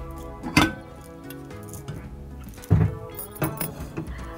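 Background music with a light metallic clink of steel cookware being handled on the gas stove about half a second in.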